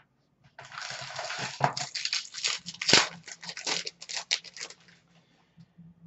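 Hockey card pack being opened by hand: a run of crinkling and tearing of the wrapper mixed with small clicks and snaps from the packaging and cards. It starts about half a second in and stops about a second before the end.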